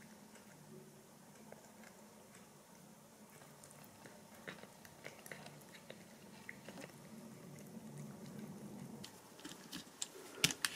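A domestic cat eating wet food from a bowl: faint chewing with small wet clicks, a little louder in the second half.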